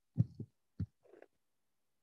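Handling noise: a few short, low, muffled thumps in the first second or so, as a hand reaches for the computer.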